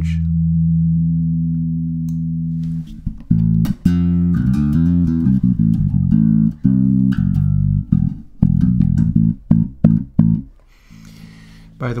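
Electric bass guitar with a Mudbucker pickup, compressed and played through the Holt2 resonant lowpass filter set higher, toward the upper mids. One long low note rings for about three seconds, then comes a run of plucked notes that get shorter and more staccato before stopping shortly before the end.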